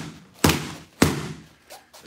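A closed fighting fan striking a freestanding punching bag: two sharp thuds about half a second apart, each with a short echo of the room.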